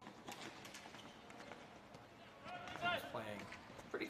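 Live ball hockey play on a plastic sport court: scattered sharp clacks and knocks from sticks and the ball, with running footsteps. Players' voices call out about two and a half seconds in.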